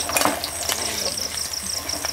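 Hot oil sizzling in a wok as fried fish steaks are lifted out with a metal spatula, with the spatula clinking against the pan about a quarter second in and again near the end. Crickets chirp in a fast, steady pulse behind it.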